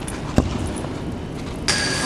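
Steady background noise of a busy indoor hall, with a single sharp thump a little under half a second in, and a steady high-pitched tone that comes in suddenly near the end.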